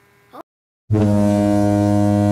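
After a moment of dead silence, a loud, steady low tone with many overtones starts abruptly about a second in. It holds one flat pitch throughout, like a horn or buzzer.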